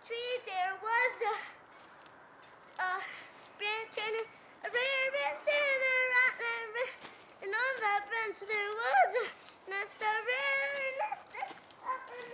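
A young child's high voice singing and vocalising in short phrases without clear words, some notes bending and some held.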